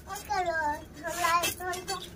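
A small child's high voice in a drawn-out, sing-song line of singing or chanting.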